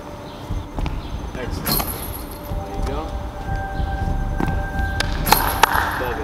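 35mm film camera shutter firing: several sharp clicks, one about two seconds in and a quick cluster near the end.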